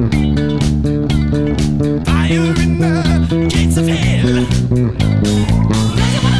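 Music Man StingRay electric bass played fingerstyle, a repeating pattern of low notes, along with the original disco-rock recording.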